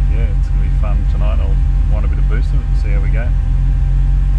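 Turbocharged Nissan Pulsar N12 (E15ET 1.5-litre four-cylinder) engine idling steadily, heard from inside the car, running on a roughly 50/50 E85 and 98 blend with the injector trims raised; the idle has picked up a bit and the mixture reads slightly rich. A voice speaks indistinctly over it.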